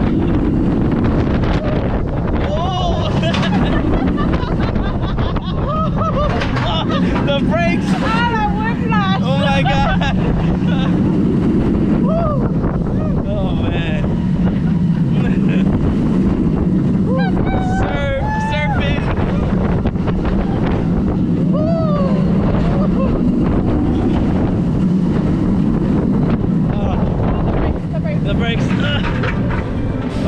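Heavy wind rushing over the camera microphone on a moving roller coaster, with the steady rumble of the train running on the track. Riders let out wordless yells and laughter several times, most strongly about a third of the way in and again past the middle.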